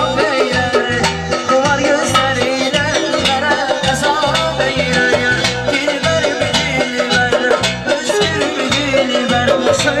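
Live Azerbaijani wedding music played through an amplified sound system: a male singer's ornamented, wavering vocal line over accordion and a steady nagara drum beat.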